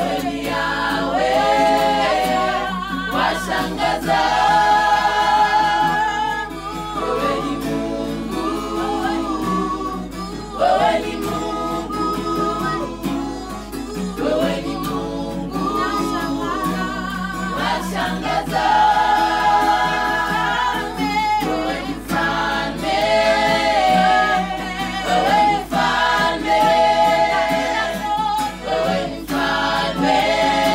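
A small group of women's voices singing a gospel song unaccompanied, in several-part harmony, phrase after phrase with short breaths between.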